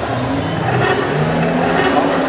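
A recorded car engine revving, its pitch rising in steps, played through the hall's loudspeakers.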